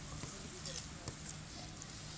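Quiet outdoor park background with faint distant voices and a few small clicks.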